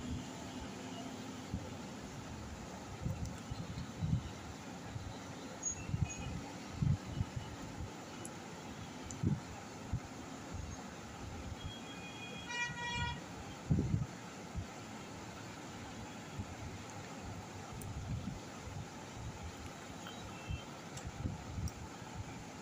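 Quiet background hiss with a few soft low thumps. About twelve and a half seconds in comes a brief pulsed horn-like toot.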